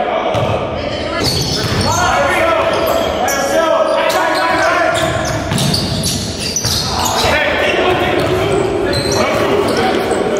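Basketball bouncing on a hardwood gym floor, with shoes on the court and players' voices, all echoing in a large hall.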